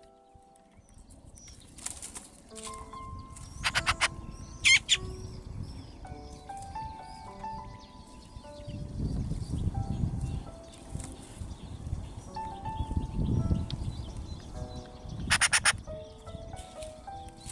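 Eurasian magpie chatter: short, rapid rattling bursts a couple of seconds in, around four seconds in, and again near the end, over soft background music with held notes.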